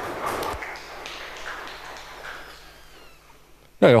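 Audience applause that gradually dies away.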